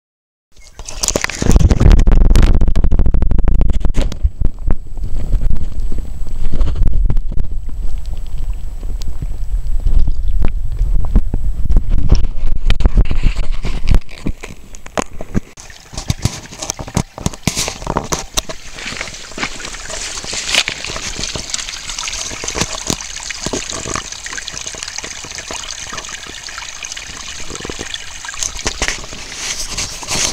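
Running water: a loud rush with a deep rumble for the first half, then about halfway through it drops to the quieter, brighter trickle of a small stream running over rocks.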